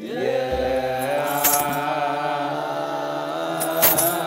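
Ethiopian Orthodox debteras chanting together in slow, long-held notes of liturgical chant. A brief high jingle cuts through about one and a half seconds in and again near the end.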